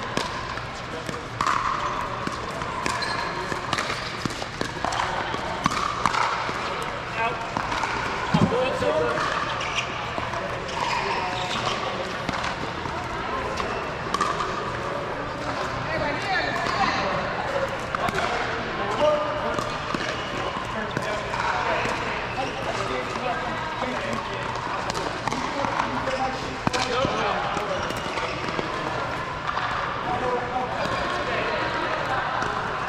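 Pickleball paddles striking a plastic pickleball: repeated sharp pops at irregular intervals, over indistinct voices from players.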